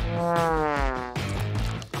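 Comic background music: a brass-like note slides downward for about a second over a pulsing low beat.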